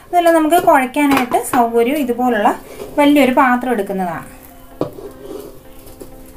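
A voice talks for about the first four seconds. Then a faint steady hum follows, with a single sharp knock of a utensil against a stainless steel bowl of grated tapioca.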